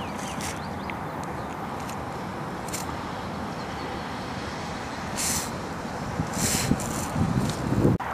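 Steady wind noise on the microphone mixed with the hum of highway traffic. A few brief louder rustles come after about five seconds, with rougher bumps near the end.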